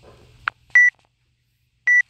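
Electronic workout-timer countdown: two short, high beeps about a second apart, with a sharp click just before the first.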